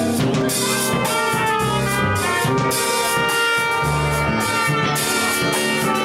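A live jazz band playing: a trumpet holds long melody notes over keyboards, electric bass and a drum kit with steady cymbals.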